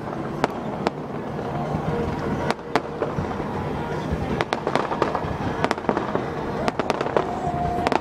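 Aerial fireworks bursting: a run of sharp cracks and pops at irregular intervals, coming thickest from about four seconds in, over a steady background hiss.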